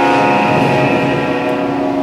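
Symphony orchestra holding one long, steady chord.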